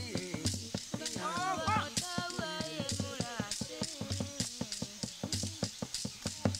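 Bayaka forest singing: voices sliding up and down in pitch over a steady beat of sharp percussive strikes, about four or five a second.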